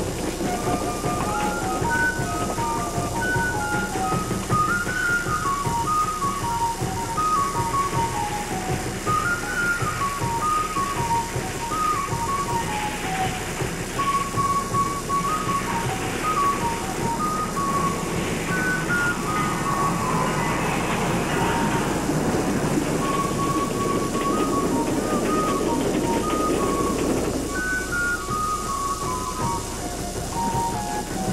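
Background music, a melody of short, high notes, laid over the sound of a 1920 Baldwin narrow-gauge steam locomotive working uphill with its coaches. The train sound grows louder in the second half and falls away a few seconds before the end.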